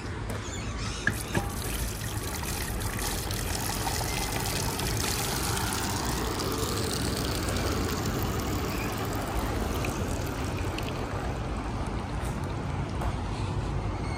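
Water running steadily from a push-button metal water spout and trickling into a brick-and-gravel garden bed, with a couple of short clicks about a second in.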